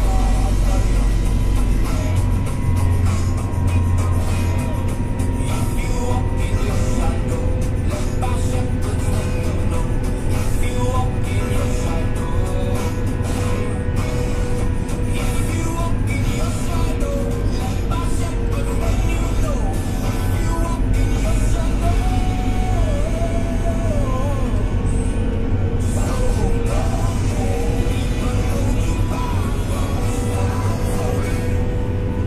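Radio music playing inside a Fendt 724 tractor's cab over the steady low drone of the tractor's engine as it drives along.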